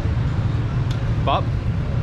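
Steady low rumble of street traffic and engines on a city road, even in level throughout.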